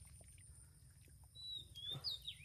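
Faint splashing and squelching of hands groping through shallow muddy water, louder in the second half, with a thin high whistle near the end.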